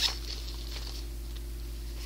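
Faint rustling as a fabric makeup pouch is opened and handled, over a steady low electrical hum.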